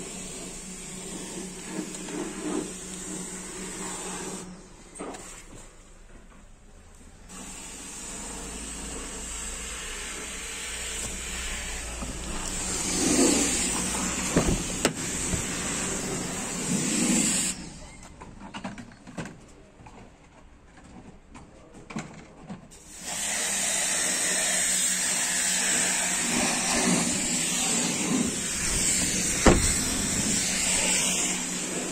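A VW Passat CC 2.0 TDI CBAB four-cylinder diesel idling, with a steady hiss over it. The sound drops away twice for a few seconds.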